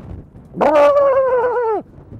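A man's long drawn-out shout, held at one high pitch for just over a second and falling slightly as it ends.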